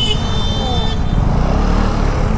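KTM Duke 200 single-cylinder motorcycle engine running under the rider, a steady low rumble, with a high steady tone over it that stops about halfway through.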